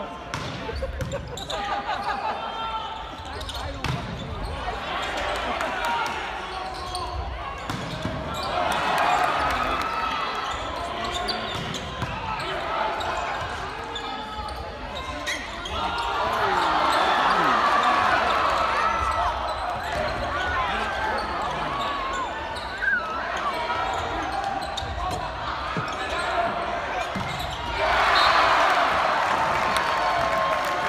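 A volleyball rally in a gym: players and spectators shouting over one another, with the thuds of the ball being hit. The shouting swells in waves as the rally goes on and is loudest near the end, when the point is won.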